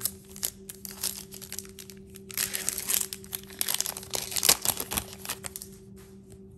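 Wrapper of a basketball trading-card hobby pack crinkling and tearing as it is opened by hand. The crackle comes in uneven bursts, densest a little before halfway and again later on.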